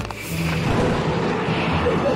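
Cartoon sound effect of a rumbling jolt as an airliner hits turbulence, over soft background music.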